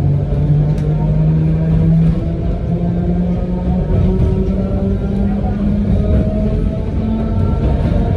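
Narrow-gauge electric train heard from inside the passenger car while running: a low running rumble under a motor hum of several steady tones that shift up in pitch about two seconds in.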